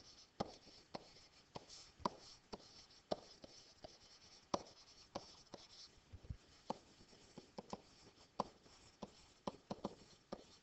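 Stylus handwriting on a digital writing surface: faint, irregular taps and short scratches as each word is written out.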